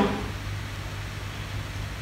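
A steady low hum with a faint even hiss: the room's background noise.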